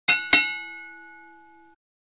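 Boxing ring bell struck twice in quick succession, the 'ding-ding' of a round, its ringing fading and then cut off abruptly near the end.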